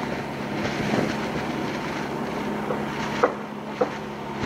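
Steady low engine hum under even outdoor background noise, with two short knocks a little past three seconds in.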